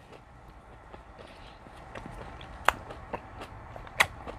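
A person chewing an orange slice close to a clip-on microphone: faint mouth sounds that turn into a few sharp wet clicks in the second half.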